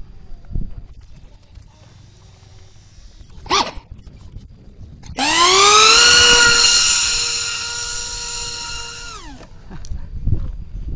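RC plane's motor driving a ducted propeller, spooling up fast to a steady high whine that holds for about four seconds, then winding down quickly near the end.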